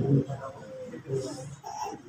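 A man preaching, with a pause between phrases: his voice trails off just after the start, a few faint, drawn-out words follow, and he speaks again right at the end.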